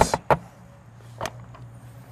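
Latch of a motorhome's exterior storage bay door clicking open, two sharp clicks in quick succession, then a softer knock about a second later as the door swings open. A low steady hum runs underneath.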